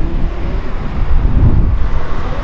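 Wind buffeting the camera microphone outdoors: an uneven low rumble that swells and dips, loudest about one and a half seconds in.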